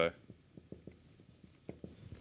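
Marker pen writing on a whiteboard: a string of short, irregular strokes as letters are written.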